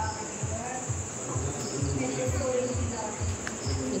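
Crickets chirring in a steady, continuous high-pitched trill, with people talking faintly in the background.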